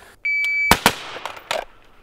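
An electronic shot-timer beep, then two quick shots from a Glock pistol fired straight after the draw, with a third, fainter bang about a second and a half in.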